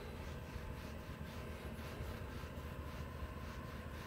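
Foam applicator pad rubbed back and forth over textured plastic bumper trim, a faint repeated swishing over a low steady background hum.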